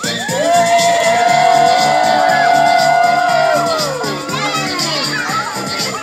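A crowd of children shouting and cheering, with one long held shout lasting about three seconds as the loudest sound, over background music with a steady beat.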